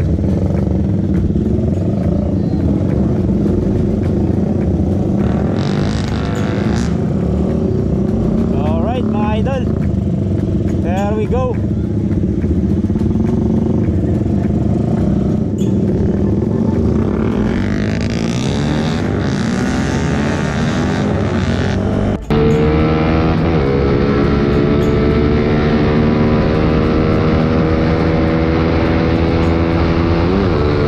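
Small single-cylinder underbone motorcycle engines running, with a few throttle blips that rise and fall in pitch. About two-thirds of the way through the sound changes abruptly to one motorcycle engine running at speed under load, its pitch shifting with the throttle.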